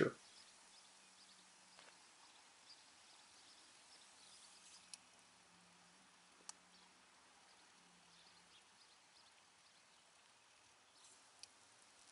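Near silence, with a faint low hum and a few faint, brief ticks.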